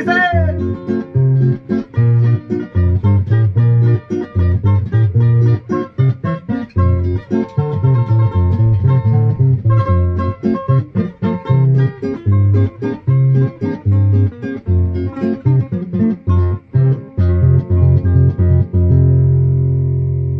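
Two acoustic guitars playing a rhythmic instrumental passage, with bass notes on the beat under runs of higher picked notes. A final chord is left ringing near the end.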